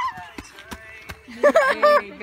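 A man's loud, strained shout ("get…") fills the last half second. Before it, in a quieter stretch, there are a few footfalls of people running on a dirt trail.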